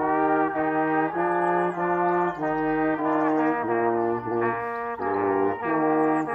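A small brass ensemble of two trumpets and a trombone playing sustained chords together, the parts moving in step from one chord to the next every half second or so. The playing comes in together right at the start after a short break.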